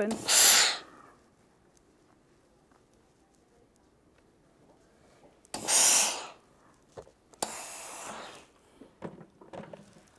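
Steam iron (Rowenta Perfect Steam) hissing in short bursts while pressing quilt seams open: two loud hisses under a second long, about a second in and about six seconds in, and a softer, longer hiss near eight seconds, with a few light clicks of handling in between.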